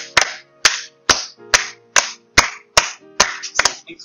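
Three people clapping their hands together in a steady rhythm, about two sharp claps a second, some strokes slightly doubled where the claps fall out of unison.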